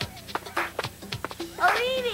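Children's TV theme music with children's voices: sharp percussive clicks, then a high swooping vocal sound that glides up and falls back near the end.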